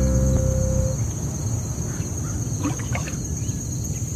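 A held musical note dies away in the first second, then a cartoon's pond soundscape: a steady high chirring with a few short frog croaks about two to three seconds in.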